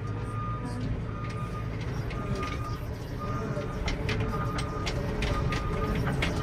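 JCB TM pivot-steer telehandler's diesel engine running under load, heard from inside the cab while carrying a full bucket of muck, with rattles and knocks from the machine. A short beep repeats about every two-thirds of a second.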